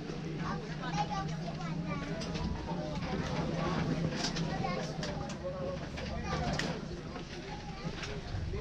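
Several people chattering as they board an open-air safari truck, over the steady low hum of an idling engine, with a few light knocks.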